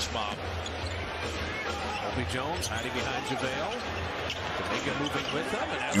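A basketball being dribbled on a hardwood arena court, heard quietly through the game broadcast's audio, with faint commentary and arena sound underneath.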